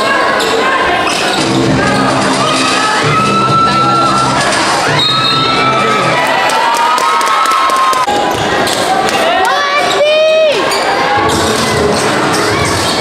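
A basketball being dribbled on a hardwood court, with a steady run of sharp bounces, while a gym crowd cheers and shouts.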